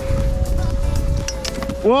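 Background music holding one steady note, over a low rumble of wind on the microphone as a ski bike runs down a snowy slope.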